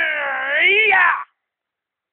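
A man's long drawn-out, wavering martial-arts yell, its pitch swinging up and down and rising near the end before it cuts off sharply about a second in.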